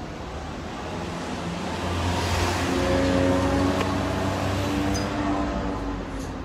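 A motor vehicle passing by, its engine and tyre noise growing louder to a peak about three seconds in, then fading away.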